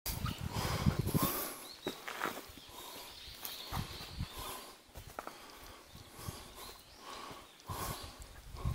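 Footsteps of someone walking on a forest trail, irregular steps and knocks with low thumps, loudest in the first second or so.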